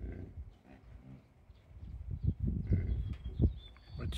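American bison grunting, with a short pitched call about a second in and low grunts later on.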